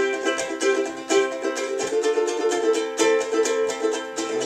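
Ukulele strummed in a steady rhythm of chords, changing chord about halfway through.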